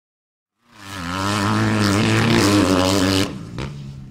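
Dirt bike engine running on a motocross track, its pitch wavering as the throttle is worked. It fades in about a second in and drops away sharply near the end.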